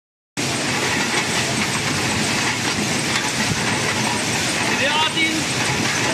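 Automatic aerosol-can labeling machine running at production speed: a steady, dense clatter of metal aerosol cans rattling and knocking along the conveyor and through the star wheels. A person's voice is heard briefly near the end.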